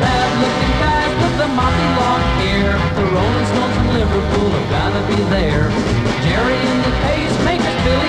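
1960s rock and roll song played by a full band, loud and steady, between sung lines of the lyric.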